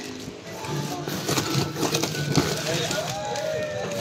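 Background voices and music, with plastic packaging crinkling as it is handled. A long, slowly falling tone runs through the second half.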